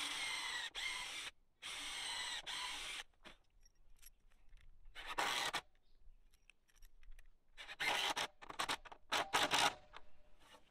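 A DeWalt cordless drill with a countersink bit cutting into a timber girt in two short runs over the first three seconds. After that come quieter clicks and short scrapes as the drill and lag bolts are handled.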